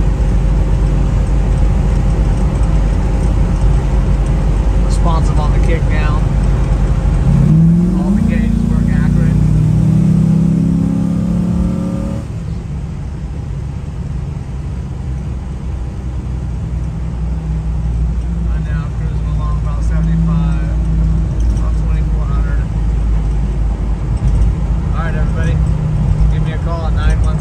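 Inside the cabin of a 1967 Camaro restomod with an LS3 V8: a steady engine and road drone, then the engine note climbing under acceleration about eight seconds in, easing off around twelve seconds in to a quieter cruise.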